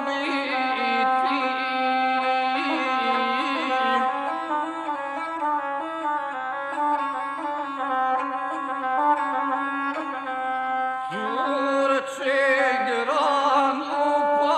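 Gusle, the one-string bowed folk fiddle, played in a steady, ornamented line under a guslar's epic singing. The voice is strongest near the start and comes in again with a rising slide about eleven seconds in.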